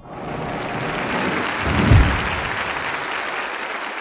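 Large audience applauding, starting abruptly, with a deep low thump about halfway through.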